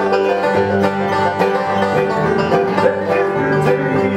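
Acoustic bluegrass band playing an instrumental passage: picked five-string banjo, mandolin and acoustic guitar over upright bass, with no singing.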